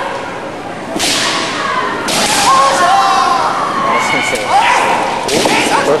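Kendo fencing: long, gliding kiai shouts from the fencers, mixed with sharp cracks of bamboo shinai strikes and thuds of feet stamping on the wooden floor. The sharpest bursts come about a second in, about two seconds in and again near the five-second mark.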